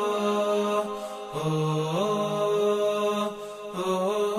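A slow chanted vocal melody, sung in the manner of a nasheed, in long held notes that step up and down between pitches. The melody dips briefly about a second in and again near the end.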